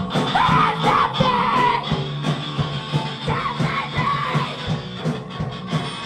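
Hardcore punk band playing live: bass guitar, electric guitar and drums, with yelled vocals over the top.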